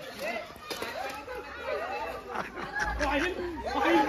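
Several young men's voices calling and chattering over one another, with a few brief sharp knocks.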